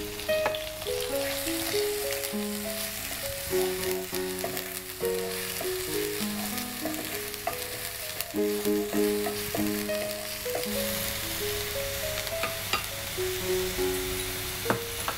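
Chopped onions sizzling in hot oil in a frying pan as they are stirred with a wooden spatula, with a few clicks of the spatula against the pan. Background music with a slow melody plays throughout.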